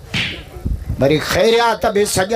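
A man speaking loudly and emphatically into a stage microphone, opening with a short sharp hiss before his voice comes in about a second later.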